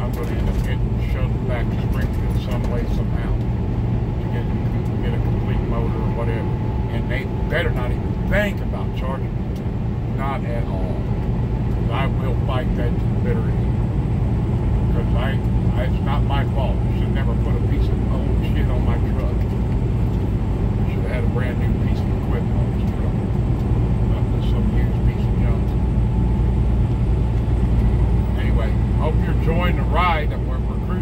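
Steady drone of a semi truck's diesel engine and tyres at highway speed, heard from inside the cab.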